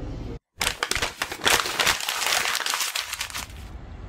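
A short dead gap, then about three seconds of dense crinkling, crackling noise with many small clicks, fading out before the end.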